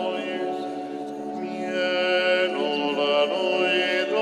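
Liturgical chant sung in long, held notes, dipping slightly in loudness about a second in before swelling again.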